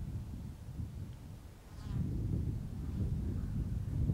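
Wind buffeting the microphone, a steady low rumble, with one faint brief higher sound just before the middle.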